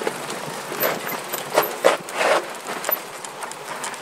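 Off-road handcycle rolling down a rocky dirt trail: a steady rumble of tyres on dirt, with a few sharp, irregular knocks and clatters about one to two and a half seconds in as the wheels and frame jolt over rocks.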